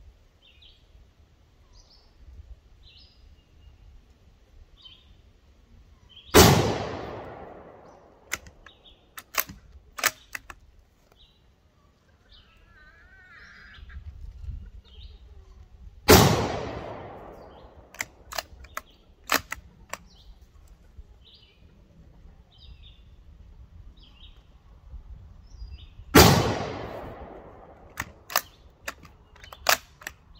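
Three shots from a Ruger American Ranch bolt-action rifle in 5.56/.223, about ten seconds apart, each ringing out for about a second and a half. A few seconds after each shot come three or four sharp clicks of the bolt being worked to chamber the next round. Birds chirp faintly between shots.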